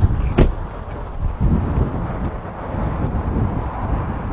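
Low wind rumble on a handheld microphone outdoors, with one sharp click about half a second in.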